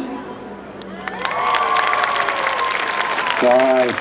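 Dance music cuts off and an audience applauds and cheers, with one long drawn-out cheer from about a second in. A voice starts calling out near the end.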